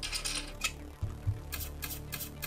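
Online blackjack game sound effects as cards are dealt: a short swishing burst, then a quick run of sharp clicks about a second and a half in, over faint steady background music.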